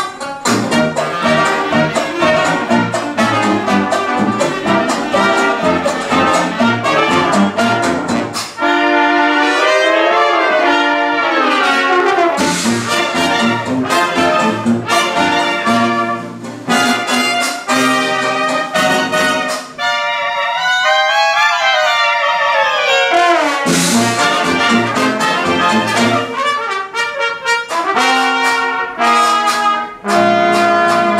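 Traditional 1920s-style jazz band playing live, with trumpets, trombone, clarinet and saxophones over sousaphone and banjo. Twice, about nine and twenty seconds in, the low rhythm drops away while the horns play phrases that rise and fall.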